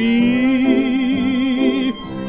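An old 1940s dance-band record playing an instrumental passage between sung verses: one held note with vibrato that cuts off near the end.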